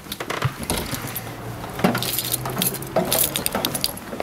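Footsteps and metallic clanks going down a fifth-wheel trailer's metal entry steps, with small rattles and clinks in an irregular string of knocks.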